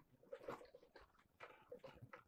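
Near silence in a pause between spoken lines, with a few faint short ticks.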